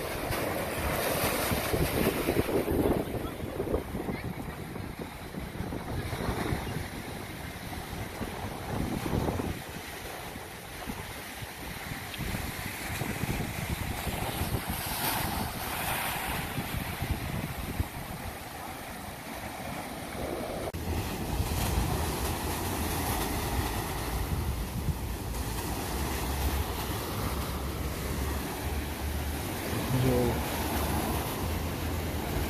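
Ocean surf breaking and washing against a concrete breakwater wall, the hiss of the white water swelling and easing in surges. From about two-thirds of the way through, wind buffets the microphone with a low rumble.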